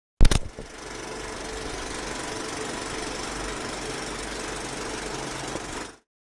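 Old film projector running with a fast, steady mechanical clatter and hiss, opening with a loud cluster of clicks and cutting off just before the end.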